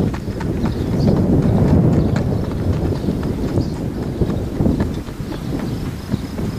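Uneven low rumble of wind and handling noise on the camcorder's microphone, loudest about one to two seconds in, with scattered light knocks.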